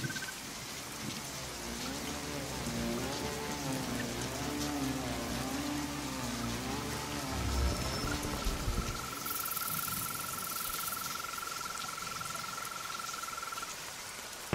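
Heavy rain falling steadily. Over it, a low wavering tone rises and falls through the first half, and a thin, steady high tone is held through most of the second half, ending just before the end.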